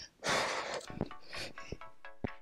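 A sharp, breathy exhale of exertion during push-ups near the start, over background music with a beat.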